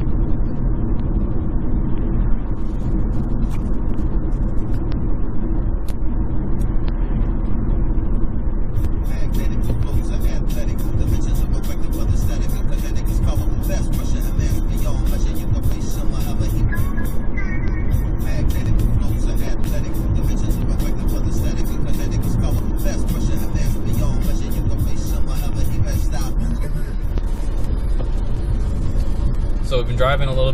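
Steady tyre and road noise inside the cabin of a 2011 Chevrolet Volt driving on battery power. Background music with a quick, steady beat comes in about nine seconds in and stops a few seconds before the end.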